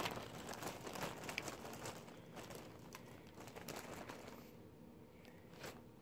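Faint rustling and small plastic clicks of hands rummaging through a tub of plastic pacifiers, busiest in the first few seconds and thinning to a few separate clicks later.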